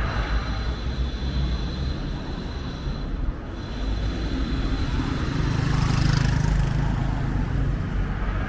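City street traffic: a car drives past, swelling to its loudest about six seconds in, over a steady low rumble.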